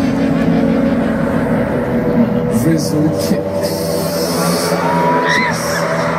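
Music playing over an outdoor concert PA amid a large crowd, with voices close to the microphone and a laugh about four seconds in.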